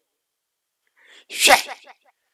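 A person's single sudden, loud vocal burst about one and a half seconds in, after a second of silence. It is brief and falls in pitch.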